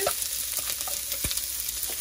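Chopped onion sizzling in hot sesame oil in a wok, a steady hiss of frying that began as the onion hit the pan.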